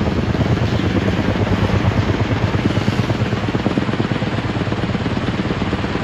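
Kaman K-MAX K-1200 intermeshing twin-rotor helicopter hovering overhead with a tree slung on a long line, its turbine and counter-rotating rotors making a loud, steady noise with a fast, even rotor chop.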